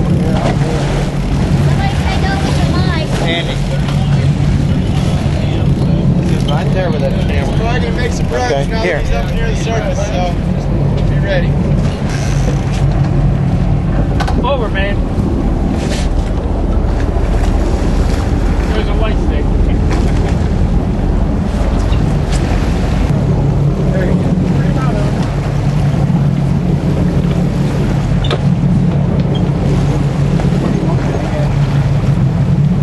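Fishing boat's engine running with a steady low hum while water rushes along the hull as the boat moves through open sea.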